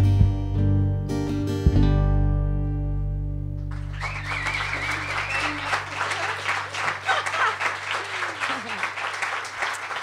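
The last chords of an acoustic guitar and a lap-played slide guitar, struck again at the start and about two seconds in, ring out and fade. Applause breaks out about four seconds in and carries on.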